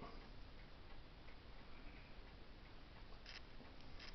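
Near silence: quiet room tone with faint ticking and a brief soft rustle about three seconds in.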